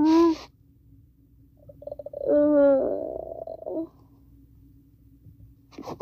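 A child's voice making one drawn-out, wordless creature call about two seconds in, steady in pitch and going rough and buzzy near its end, as a pretend monster sound in toy play.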